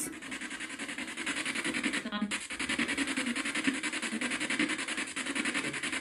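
Spirit box radio sweeping through stations, played through a small speaker: a steady, rapidly chopped hiss of static, with a brief voice-like snatch about two seconds in.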